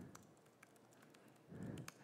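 A few faint, scattered computer keyboard keystrokes over near-silent room tone.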